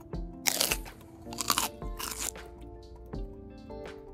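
Background music with steady held notes, broken by three short, loud scratchy sounds in the first two and a half seconds.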